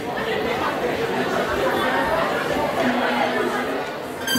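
Many people chattering at once, overlapping voices with no single clear speaker, in a large hall.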